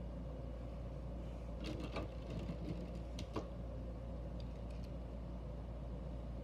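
Steady low hum of a small motorized display turntable slowly spinning. A few faint clicks come about two seconds in and again a little after three seconds.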